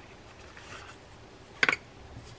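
Faint rustle of hands handling small metal fishing-reel parts, then a single short, sharp click about one and a half seconds in.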